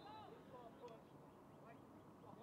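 Near silence, with a few faint, distant voices.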